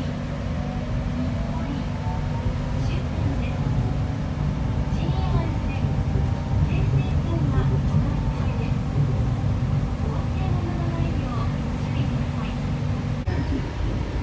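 Nippori-Toneri Liner rubber-tyred automated guideway train running, heard from on board: a steady low rumble of tyres on the concrete guideway, with faint motor whine tones slowly shifting in pitch. The sound breaks briefly near the end.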